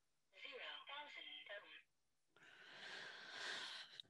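Talking multimeter's small speaker announcing its new resistance setting in a faint synthesized voice, just after the dial is turned. A soft hiss follows, growing a little louder near the end.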